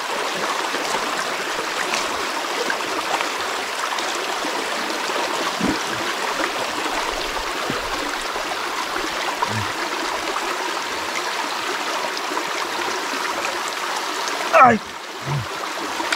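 Shallow rocky stream running over stones, a steady rush and babble of water.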